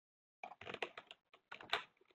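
Computer keyboard keystrokes: a quick, irregular run of clicks starting about half a second in.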